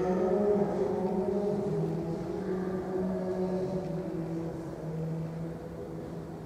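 Church music of slow, sustained low chords, the held notes shifting only every second or so and fading away toward the end.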